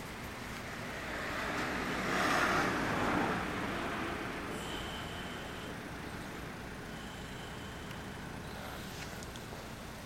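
Street traffic noise, with a vehicle passing by and fading about two to three seconds in.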